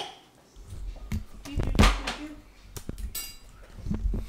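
Handling a loaf of sourdough in its paper bag on a tiled counter: the paper rustling, a few knife and cutlery clinks and knocks, and thumps from the camera being moved.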